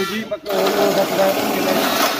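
Cordless drill running steadily for about a second and a half, starting about half a second in, driving a screw into the aluminium frame.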